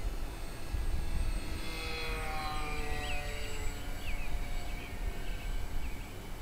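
Brushless electric motor and propeller of a small RC flying wing flying by: a whine that swells and falls in pitch as it passes, over low wind rumble on the microphone.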